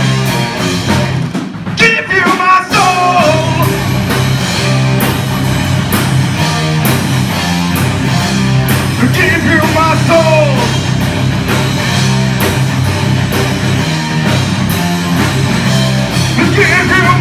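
Live rock band playing loudly: electric guitars and a drum kit, with drum and cymbal strikes running through it.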